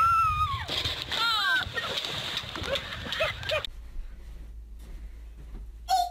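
A splash of water as a person drops from a sailboat's rope into shallow sea water, with people whooping and yelling over it. After a few seconds it gives way to a quieter stretch with a low steady hum.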